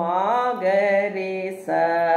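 A woman's voice singing two sustained note syllables (Carnatic swaras) with the flute away from her mouth. The first is long and slides up at its start before holding steady. The second begins near the end.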